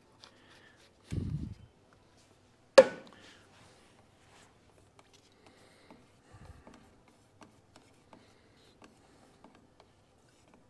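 Containers and mixing cups handled on a workbench: a low dull thud about a second in, then a single sharp knock at about three seconds, followed by faint, scattered light ticks and taps.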